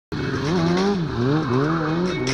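Sport bike engine revving up and down in quick pulses, about twice a second, as the bike is spun in a tight circle, with the rear tyre squealing on the asphalt.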